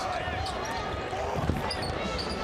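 Arena sound of a basketball game in play: a steady crowd murmur with a few sharp thuds of the ball and bodies on the hardwood court about one and a half seconds in.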